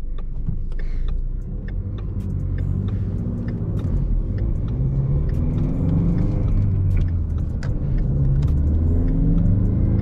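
A 2016 Ford Mustang EcoBoost's turbocharged 2.3-litre four-cylinder, heard from inside the cabin, accelerating away from a stop with its manual gearbox. The engine note climbs in pitch and drops back about three times as it is shifted up, over a low rumble that grows slowly louder.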